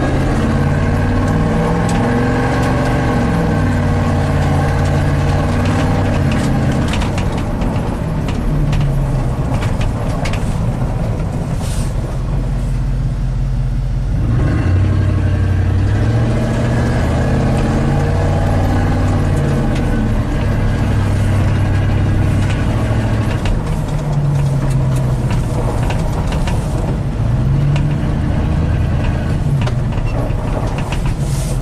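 1987 GMC 1500 pickup's engine heard from inside the cab while driving, its pitch rising and falling several times as it speeds up and eases off, with a short lull about halfway through. It runs smoothly with no misfire or stumble now that the ignition control module has been replaced.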